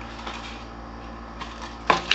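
Light handling of a small cardboard box, with a faint scrape about a second and a half in and a sharper knock near the end, over a steady low hum.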